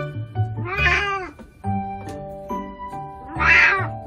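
Elderly house cat meowing twice: one loud, drawn-out meow about a second in and another near the end, over background music.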